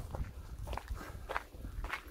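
Footsteps of a person walking, four even steps about half a second apart.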